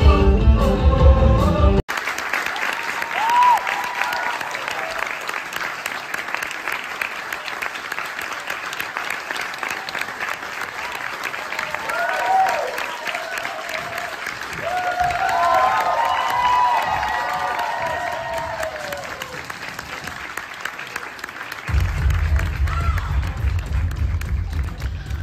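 A theatre audience applauding with cheers and whoops rising above the clapping, between stretches of a live band playing loud pop-rock music with heavy bass: the music breaks off suddenly about two seconds in and comes back near the end.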